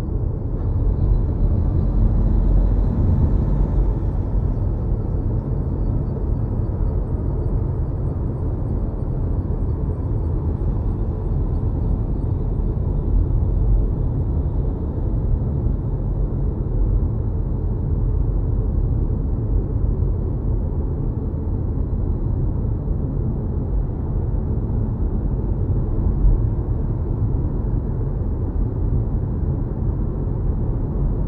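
Steady low road rumble heard inside an electric car's cabin at highway speed: tyre and road noise with no engine note.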